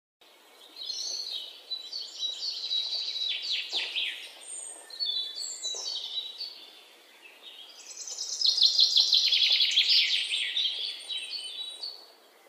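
Birds singing in three bouts of rapid, repeated high chirps, with a brief lull about seven seconds in.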